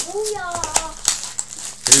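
Crinkling and light clicks of hockey-card pack wrappers and cards handled on a table, with a child's high voice over them in the first second.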